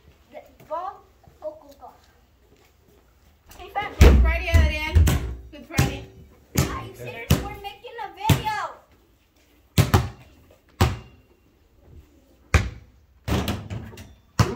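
A basketball bouncing on concrete, about eight separate sharp bounces spread through, with voices calling out in between.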